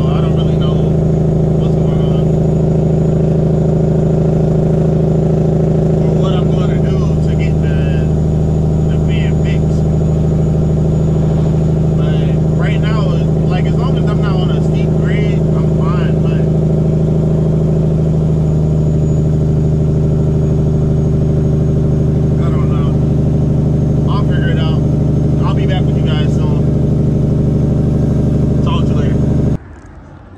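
Peterbilt 379 semi truck's diesel engine running steadily at cruise, heard from inside the cab, with its pitch shifting slightly a couple of times.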